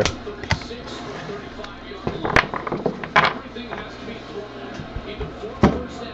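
Trading cards and foil packs being handled, a few brief crackles and clicks over a low steady hum.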